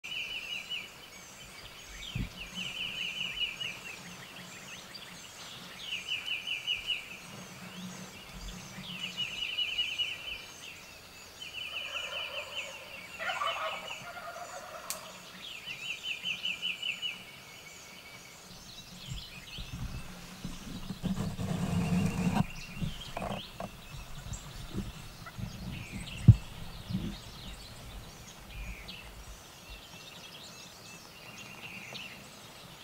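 Wild turkeys gobbling again and again, a rattling gobble roughly every three seconds through the first half, over faint high songbird chirps. Later comes a rushing noise lasting a few seconds, then one sharp click, the loudest sound.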